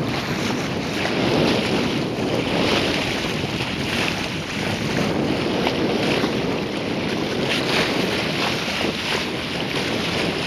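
Water rushing and splashing at the bow of a Stewart 34 sailing yacht under way, with gusts of wind buffeting the microphone; the rush swells and eases slightly as the bow works through the waves.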